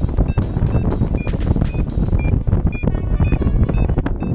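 Paragliding variometer beeping in short, evenly spaced tones about twice a second, the pitch shifting slightly from beep to beep, the climb signal of a glider in rising air. Strong wind noise on the microphone rumbles underneath.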